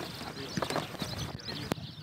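Irregular footsteps and light taps from players walking in football boots, with faint birds chirping in the background.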